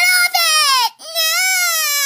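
A young girl's high-pitched pretend crying, play-acting a crying doll: two long wails, the second swelling and then dropping in pitch as it fades.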